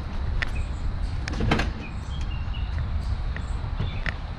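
A 1952 Oldsmobile Ninety-Eight's 303 cubic inch Rocket V8 starting and running at a fast idle on the choke: a steady low rumble with a few sharp clicks, the largest about a second and a half in.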